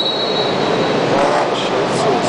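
Referee's whistle held in one long, high blast that stops about a second in, starting the wrestling bout, over the murmur of spectators' voices.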